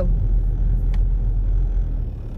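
Steady low rumble of a car being driven, heard from inside the cabin: engine and road noise with no speech.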